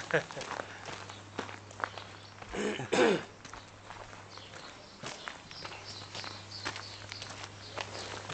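Footsteps walking on a gravel track, with a short laugh at the very start and a brief voice about two and a half to three seconds in.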